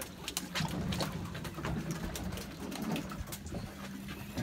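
Short knocks and clicks from a just-landed red grouper being handled aboard a boat, over a steady low hum.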